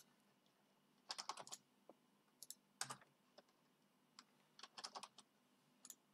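Computer keyboard typing: a few short, quiet bursts of key clicks separated by pauses.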